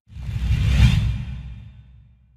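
A whoosh sound effect over a low rumble, for an animated logo reveal. It swells to a peak a little under a second in, then fades away.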